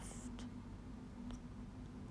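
Quiet room tone with a steady low hum, a brief soft hiss at the very start and a few faint ticks.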